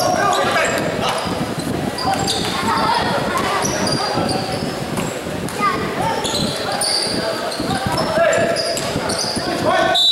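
Basketball game on an indoor court: the ball bouncing as it is dribbled, sneakers squeaking in many short high chirps, and players and onlookers calling out, echoing in the hall.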